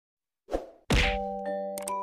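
Intro sound effect: a short thud, then a louder impact hit about half a second later, followed by several held ringing chime notes and light tinkles that begin a bell-like jingle.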